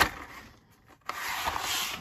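Carded Hot Wheels cars being handled: a sharp tap, then about a second in, nearly a second of steady rubbing as cardboard-backed blister packs slide against each other.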